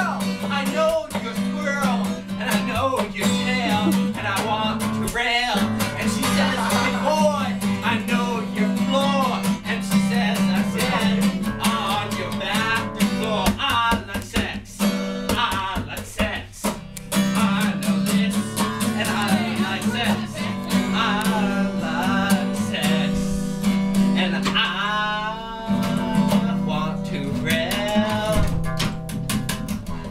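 Acoustic guitar strummed steadily, with a voice singing along over it.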